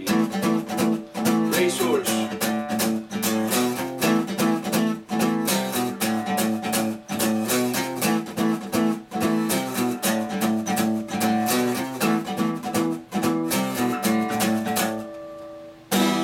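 Acoustic guitar strummed in a steady rhythm, chords without singing. Near the end the strumming stops and a last chord rings out and fades.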